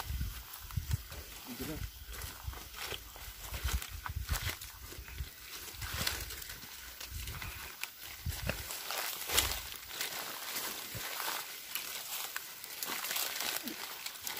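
Footsteps and bodies pushing through dry grass and undergrowth: irregular crackling and rustling of stems and leaves, with low thumps from a hand-held microphone on the move.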